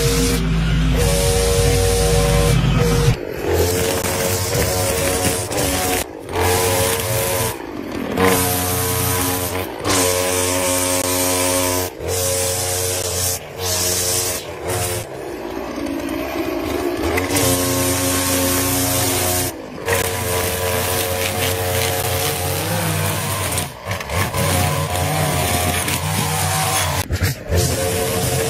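Gas string trimmer engine running at high speed as it cuts grass and brush. The sound is chopped into short pieces, its pitch jumping up or down at each cut.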